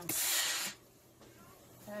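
Steam iron letting out a short burst of steam: a hiss lasting just over half a second at the start.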